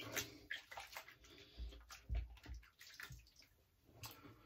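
Faint, intermittent water sounds at a bathroom sink: small splashes and dabs, with soft clicks early on and a few low bumps a little after the middle.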